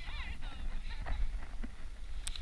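Faint voices in the first half second, over a steady low rumble of wind on the microphone.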